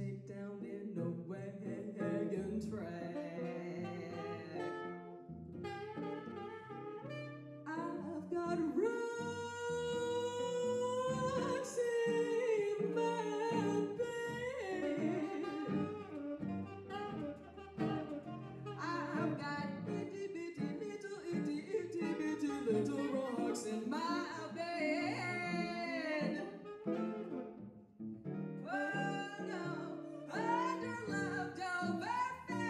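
Live small-group jazz: a woman singing with guitar and saxophone accompaniment, with one long held note about nine seconds in.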